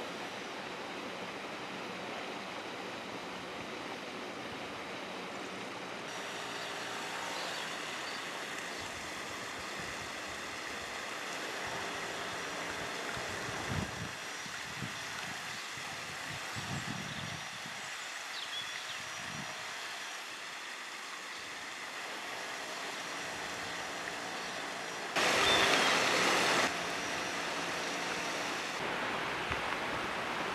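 Outdoor ambience: a steady rushing noise, with one louder burst of noise lasting about a second and a half near the end.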